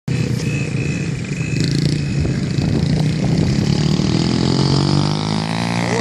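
A child's small dirt bike engine running on the throttle, its pitch climbing over the last couple of seconds as the bike comes closer.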